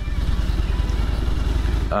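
Harley-Davidson touring motorcycle's V-twin engine running at a steady cruise, a low rumble with rapid, even firing pulses, heard from the rider's seat.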